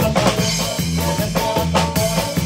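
Live norteño band playing an instrumental zapateado: a drum kit keeps a fast, steady beat under a bass line and sustained melody notes.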